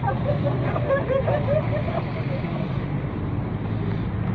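Steady low rumble of nearby vehicle engines mixed with wind on the microphone, with people's voices calling out over it in the first two seconds.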